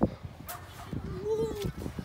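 Plastic spades digging into wet sand, with sharp knocks and scrapes, one right at the start and another about half a second in. A short, arching voice-like call sounds about one and a half seconds in.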